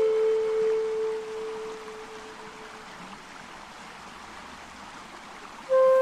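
A held flute note fades away over the first few seconds, leaving a soft background of running water. A new flute note comes in suddenly near the end.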